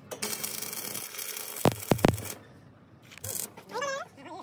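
Sheet-metal panel being handled and fitted against a steel bus-body frame: a rustling, scraping noise for about two seconds, then two sharp metallic clicks close together about two seconds in, and a short scrape a little after three seconds.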